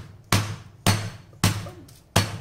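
A heavy cast-iron skillet pounding a chicken breast fillet through plastic wrap on a cutting board to flatten it: three dull thuds about half a second apart.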